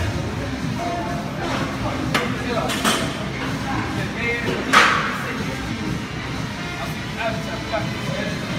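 Busy gym ambience: background music and people's voices, with a few sharp clanks, the loudest about five seconds in.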